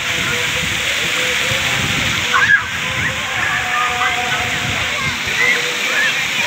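Water-park fountains and spray towers pouring a steady rush of water into a shallow splash pool, with children's distant shouts mixed in and one louder shout about two and a half seconds in.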